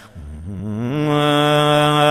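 A man's voice chanting an Ethiopian Islamic manzuma, a devotional chant. After a short breath at the start it rises from a low pitch into one long, steady held note.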